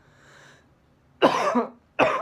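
A man coughing into his elbow: a short breath in, then two loud coughs about three-quarters of a second apart, the second coming near the end.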